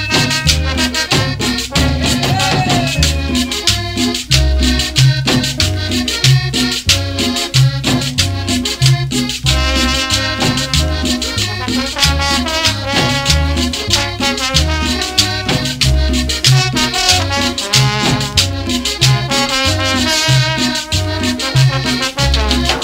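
Instrumental cumbia passage with a steady, repeating bass pattern under quick percussion strokes and sustained melodic instrument lines, with no vocals.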